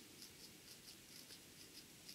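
Near silence: room tone in a small room, with faint, quick, soft ticks about four or five a second.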